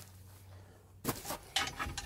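Short metal clinks and knocks as a steel hitch lock is handled against a trailer coupling, starting about a second in.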